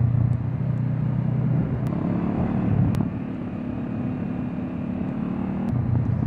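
Honda CB500X parallel-twin engine with a GPR Furore Nero exhaust, heard from the rider's seat while cruising steadily, then dropping in level about halfway through.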